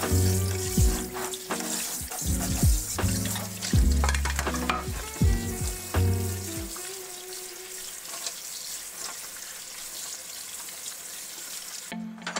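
Kitchen tap water spraying and running into a stainless-steel sink, over a frying pan and then over boiled chestnuts in a metal colander: a steady hiss. Background music plays over the first seven seconds or so, then stops, leaving only the water.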